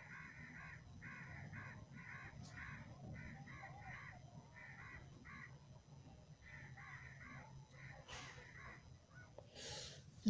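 A bird calling faintly in a long series of short harsh calls, two or three a second, with a short break a little past the middle.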